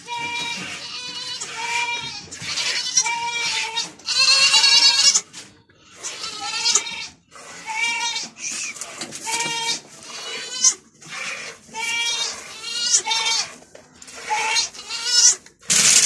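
Goats bleating over and over, about one high, quavering call a second, with a loud, long call about four seconds in.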